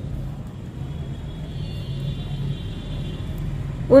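A steady low background rumble, with a faint thin high tone in the middle.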